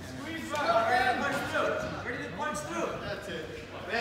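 Indistinct voices talking and calling out, quieter than the coaching shouts around them.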